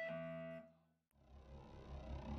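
A band's final chord, with electric guitar, bass and keyboard, rings out and fades, then cuts off to dead silence just over half a second in. After the gap a faint low rumble with soft pulses fades back in.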